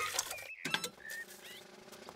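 Cartoon sound effects of a hand-cranked raffle drum turning: a few quick clicks just after half a second in, then short, high squeaky tones.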